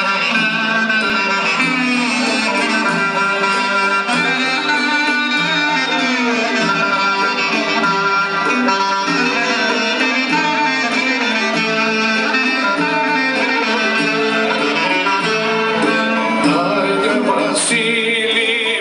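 Greek Thessalian folk dance music led by clarinet over plucked strings, playing continuously with a steady beat.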